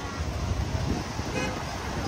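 Road traffic: a steady low rumble of engines, with a short horn toot about one and a half seconds in.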